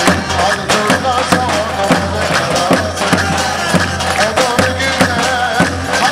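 Live folk dance music: a davul, the Turkish double-headed bass drum, beaten in a steady dance rhythm under a wavering, ornamented melody line.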